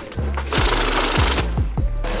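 Electric bill counter running briefly, riffling through a stack of banknotes for about a second, over background music with a steady bass beat.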